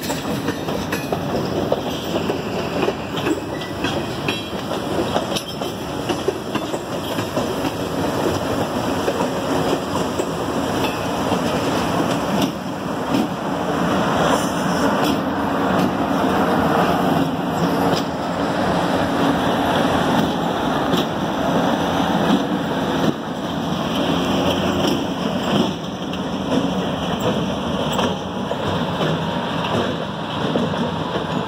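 Freight train rolling slowly past in reverse, its wheels clacking and rattling over the rails. It grows louder about halfway through as its diesel locomotives pass close by with their engines running.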